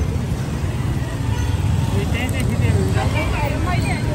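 Street traffic: a car driving close past with a steady low engine and road rumble, among the general noise of motorbikes and other vehicles.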